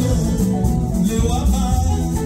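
Live Congolese dance band playing: electric guitar and drums over a driving beat, with several singers chanting into microphones.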